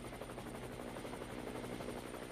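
Helicopter in flight heard from inside the cabin: a steady engine and rotor drone with a fast, even beat of the blades.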